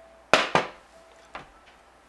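A mug set down on a table: two sharp knocks about a quarter second apart, then a lighter tap about a second later.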